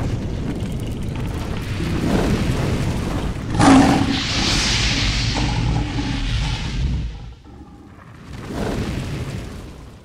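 Cinematic logo-reveal sound effects: a deep rumble that builds, then a loud boom with a hissing, fiery whoosh about three and a half seconds in, followed by a second, softer swell near the end that fades away.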